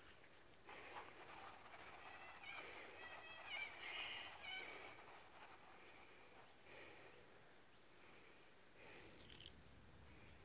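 Near silence, with faint bird calls in the background, clearest about two to four seconds in.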